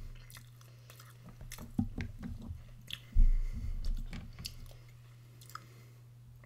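Close-miked chewing and crunching of food, with short mouth clicks, mostly in the middle seconds, and one heavy low thump about three seconds in.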